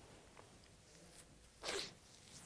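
Near silence, then about one and a half seconds in a man's single short, noisy breath sound, stifled behind his hand at his mouth.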